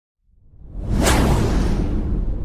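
A whoosh sound effect with a low rumble beneath it, swelling out of silence about a quarter second in, peaking about a second in, then slowly fading.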